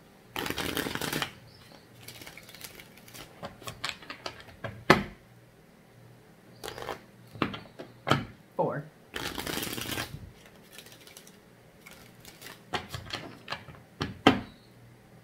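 A tarot deck being shuffled twice, each shuffle a dense flutter of cards lasting about a second: one just after the start and one about nine seconds in. Scattered sharp taps and clicks come between the two shuffles.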